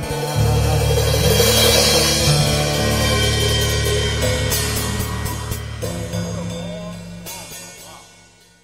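A live band holds the song's closing chords with cymbals crashing and ringing. The chords change once about six seconds in, then the sound fades away toward the end.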